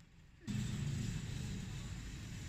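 Steady outdoor rushing noise, heaviest in the low end, that starts suddenly about half a second in.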